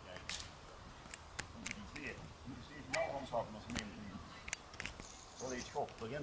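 Faint, indistinct voices with scattered light clicks, and a few short high-pitched calls about three seconds in and again near the end.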